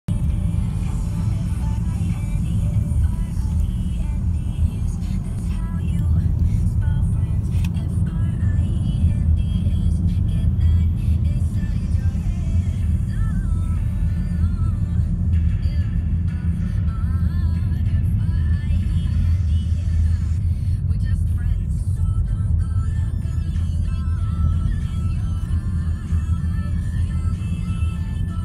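Steady low rumble of a car driving, heard from inside the cabin, with music and a singing voice playing over it.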